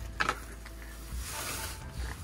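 Handling of a wooden fence gate: a single sharp click near the start, then a short scraping rustle about a second in.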